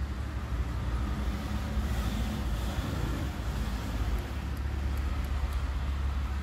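Action-film soundtrack played through the car's speakers from an aftermarket Android head unit: a deep, steady rumble with a noisy rush over it.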